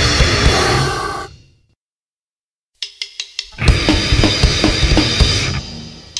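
Heavy metal recording: the full band of guitars and drums stops dead about a second in, leaving a second of silence. Separate drum and cymbal hits then start it up again and the full band comes back in, with another short drum-only break near the end.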